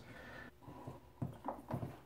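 Faint snips of scissors cutting heat shrink tubing into short pieces: about three short, sharp clicks in the second half.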